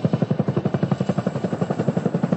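Chinook tandem-rotor helicopter lifting off at close range. Its rotor blades beat in a fast, even thumping, about a dozen beats a second, over a steady engine and rotor rush.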